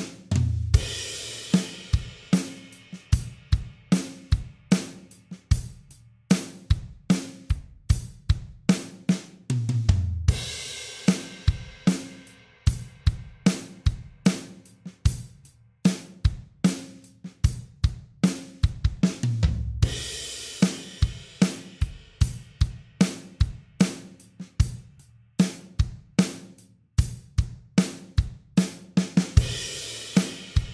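Acoustic drum kit playing a steady groove in 3/4 time at 75 BPM, with kick, snare and hi-hat. A cymbal crash with the kick drum comes about every ten seconds, at the start of each four-bar phrase.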